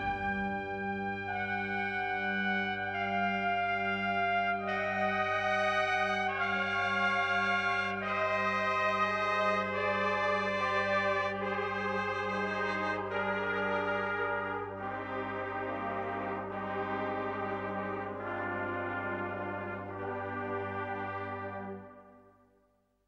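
Brass band playing a slow, quiet passage of a Spanish processional march: a melody of sustained notes over a held low bass note, dying away to silence at the very end.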